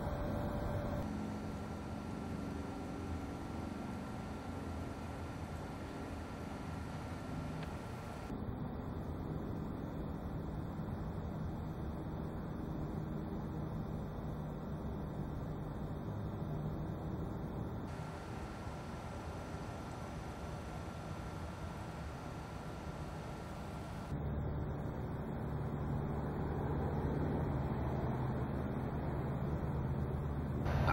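Steady low outdoor background noise with a faint low rumble. Its character shifts abruptly several times and it grows a little louder for the last few seconds.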